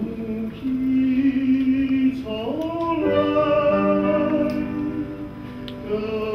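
A singer performing a newly composed Taiwanese-style song with piano accompaniment, holding long notes and sliding between pitches.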